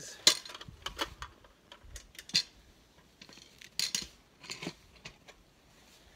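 Metal clinks and clanks from a hive-weighing lever frame and its hanging dial scale as they are hooked on and worked. It comes as a string of sharp metallic clicks, loudest just after the start and again about two and four seconds in.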